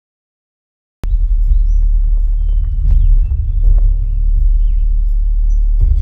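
Small birds chirping in short, bending calls over a loud, steady low rumble of outdoor noise. The sound begins abruptly about a second in.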